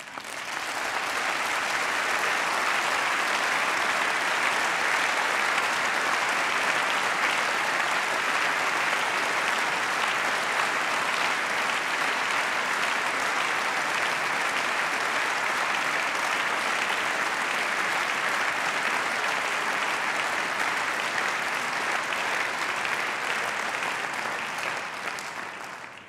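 Members of parliament applauding: a long, steady round of clapping from a large crowd that starts suddenly, holds for about 25 seconds and dies away near the end.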